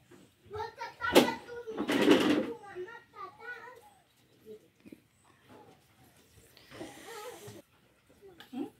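Indistinct talk, including a child's voice, with a sharp click about a second in and a short rush of noise just after, then another brief rush of noise near the end.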